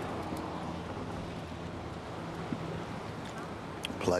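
Outdoor street background: a steady low engine hum with wind on the microphone.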